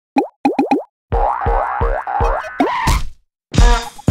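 Cartoon logo-intro sound effects: four quick rising 'boing' pops in the first second, then a short jingle with a bouncing low beat about three times a second. The jingle ends in a rising sweep, goes silent for a moment, and a loud hit near the end starts the theme music.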